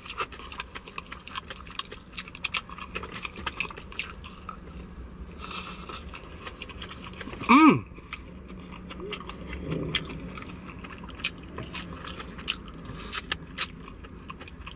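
A person chewing and biting KFC Extra Crispy fried chicken, with many small crunches and mouth clicks as the meat is nibbled off a wing bone. A short hummed voice sound comes about seven and a half seconds in.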